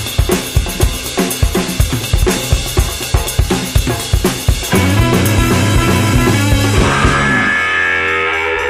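Instrumental psychedelic rock passage: a drum kit break of kick, snare and cymbal hits carries the first half, then bass and electric guitar come back in with held notes about halfway through.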